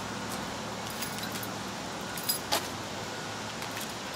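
Light metallic jingling and clinking from a walking dog's collar and leash hardware: a few scattered clinks, the loudest a pair about two and a half seconds in, over a steady low hum.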